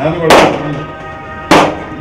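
A coconut smashed against a stone in a steel tray: two sharp cracks about a second apart, over background music with long held tones.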